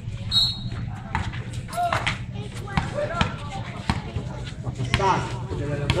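A basketball dribbled on a concrete court, bouncing repeatedly at an uneven pace, amid the voices of players and onlookers.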